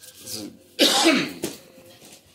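A man coughing: one loud, short cough about a second in.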